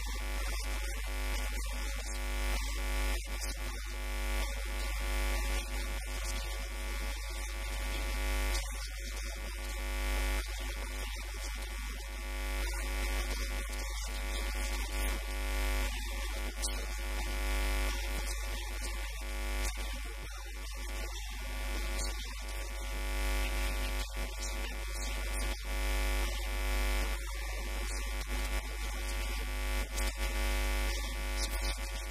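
Steady electrical interference buzz on the microphone's recording: a dense, constant buzz over a strong low hum.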